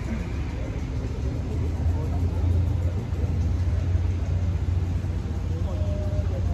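A steady low rumble fills the large hall, with faint voices from a group of people underneath.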